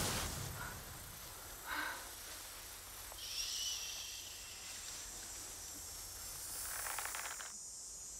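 Quiet outdoor ambience in tall grass: a low, even hiss with a few faint, short sounds, one about two seconds in, a higher one a little later, and a longer soft one near the end.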